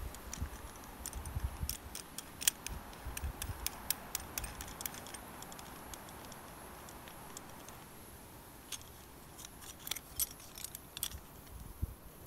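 Small metal clinks and clicks as a steel screw-link coupling is fitted and screwed shut onto a steel chain, with the climbing pulley knocking against the links. The clicks come irregularly, thickest in the first few seconds and again near the end, with some dull handling bumps early on.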